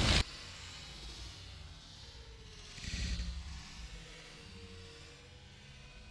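Dry leaves and pine straw rustling close to the microphone: loud for a moment at the start, then faint, with a brief soft swell of rustling about three seconds in.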